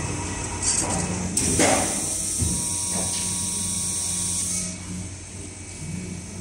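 Richpeace leather lamination machine running a press cycle: a few clicks, a loud sweep and a knock about two and a half seconds in. Then a steady hiss and hum as the press holds, stopping near the end.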